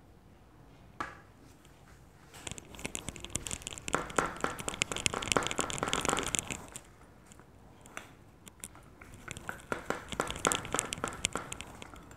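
Metal tube rolled back and forth over a slab of modelling clay on a wooden tabletop, a rapid crackly rolling noise in two spells. A single knock about a second in as the tube is set down.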